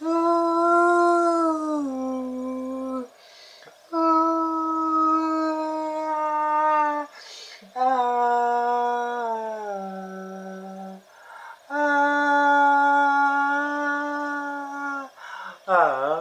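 A solo male voice singing a cappella: four long held notes without words, each about three seconds, the first and third stepping down in pitch near their ends, with a breath drawn between each.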